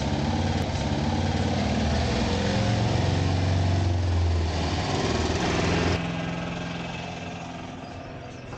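Auto-rickshaw (tumtum) engine running as it passes close by, then fading as it drives off over the last couple of seconds.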